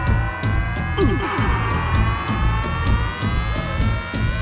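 Rock band playing an instrumental passage: electric guitar, bass and steady drum beats, with a held tone that slowly rises in pitch.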